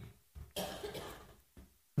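A person coughing quietly: a short catch, then a stronger cough about half a second in that fades away, and a brief catch just after one and a half seconds.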